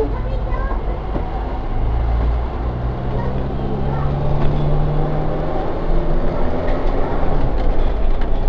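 Diesel engine and running noise of a London double-decker bus heard from inside the upper deck as it pulls away from a stop. There is a steady low engine hum, and its note rises a little around the middle as the bus gathers speed, then settles.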